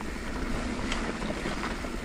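Mountain bike rolling down a dirt and rock singletrack, heard from a camera on the rider: wind buffeting the microphone over the tyres' steady rumble on dirt and stones, with an occasional knock from the bike jolting over the rocks.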